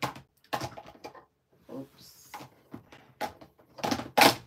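A scattered series of light knocks and clatters as stamping supplies are handled and rummaged through in a storage box.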